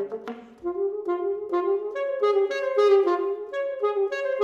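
Unaccompanied alto saxophone playing a flowing line of connected, sustained notes that step up and down, after a short break about half a second in.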